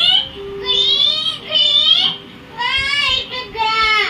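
A small child singing high, wordless notes into a toy keyboard's microphone, in about four short phrases that bend up and down in pitch.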